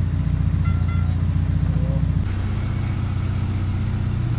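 Honda Civic EG's swapped-in GSR DOHC VTEC four-cylinder engine idling steadily. Its sound changes abruptly about halfway through.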